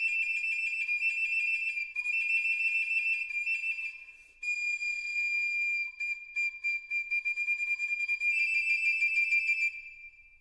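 Music: a high, flute-like woodwind note held steadily, with a short break about four seconds in and a slight drop in pitch afterwards, fading out near the end.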